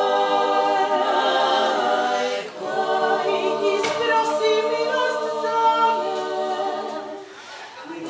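Female Croatian klapa group singing a cappella in close multi-part harmony, holding long chords. There is a brief breath about two and a half seconds in, and the phrase dies away near the end.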